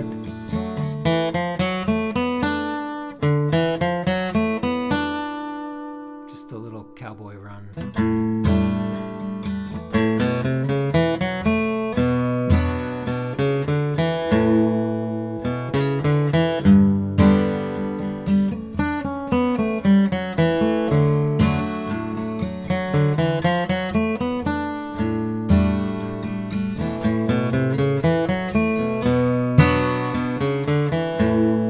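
Steel-string acoustic guitar capoed at the second fret, fingerpicked in a folk alternating-bass pattern through an instrumental solo passage. About five seconds in the picking drops away to a single chord left ringing and fading, then resumes about three seconds later.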